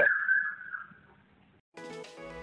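Thin, muffled ambience recorded through the JioPhone 2's front-camera microphone, with a steady high whine that fades out about a second in. After a short silence, background music starts near the end.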